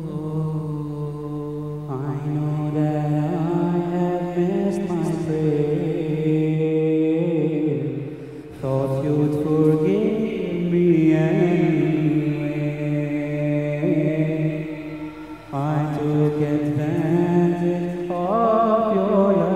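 A man chanting a nasheed into a microphone in long, wavering held notes with melodic runs. The singing breaks off briefly about 8 seconds in and again near 15 seconds.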